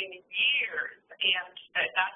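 A person speaking over a webinar call line, with narrow, phone-like sound.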